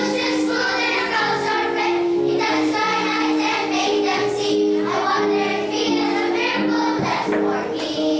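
Children's choir singing a song, voices moving through a melody with held notes.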